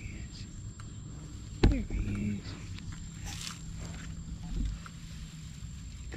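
A sharp knock about two seconds in, followed at once by a short burst of a woman's voice. Otherwise brief faint rustles and snuffles as basset hounds nose through grass, with a low thump near the end.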